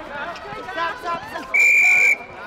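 Netball umpire's whistle: one loud, steady blast of about half a second, starting about one and a half seconds in, after people's voices.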